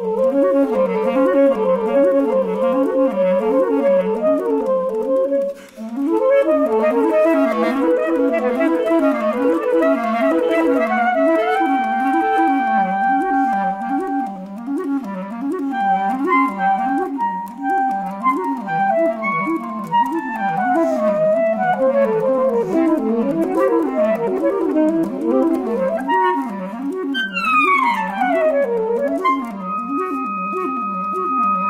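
A saxophone and clarinet duo playing. One instrument repeats a fast, undulating low figure while the other holds and moves through longer notes above it. There is a short break about five and a half seconds in, and steep downward pitch slides near the end.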